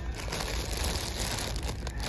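Clear plastic bag crinkling as it is held and turned in the hand.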